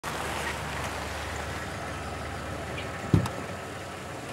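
A car engine running low and steady, then a single sharp thump about three seconds in, after which the low rumble fades.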